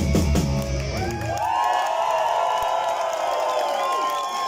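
Live rock band playing the last bars of a song with drums, bass and guitars. About a second in, the drums and bass stop, and a held high chord rings on to close the song.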